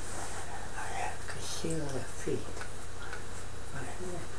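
A person's breathy vocal sounds, with two short utterances falling in pitch about halfway through, over a steady low hum.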